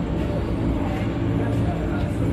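A steady low drone with a constant hum, even in level throughout.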